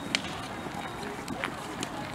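Crackling of a large wood bonfire, with a few sharp pops, over faint crowd voices.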